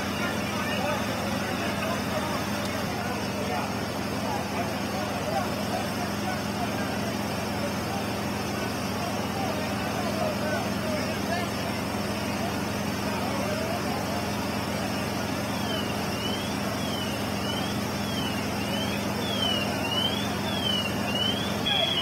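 Fire apparatus engines running steadily at a fire scene, a constant low hum under a bed of noise, with voices of the crews calling out. A siren wails up and down in pitch in the background for several seconds near the end.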